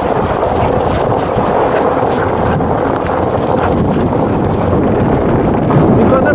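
Steady rolling noise of a husky-drawn rig running over a gravel road, with wind on the microphone.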